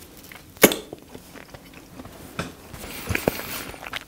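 Close-up eating sounds of a man chewing raw deep-sea shrimp, with scattered small mouth clicks and a sharp click about two-thirds of a second in, and a soft hiss of breath near the end.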